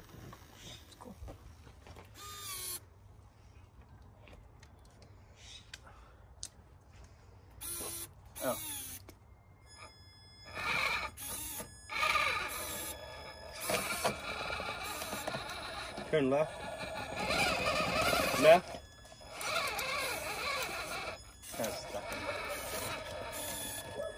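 Radio-controlled crawler truck's electric motor and gears whining in stop-and-go stretches as it crawls over logs and rocks, starting about ten seconds in, with a few scrapes and knocks earlier.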